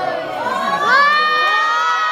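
A crowd of schoolchildren cheering and screaming. Many voices rise together in the first second into long, held, high-pitched shrieks.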